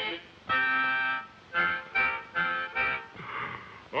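Harmonica blown in held chords: one long chord about half a second in, then four shorter chords in quick succession, ending in a breathy hiss.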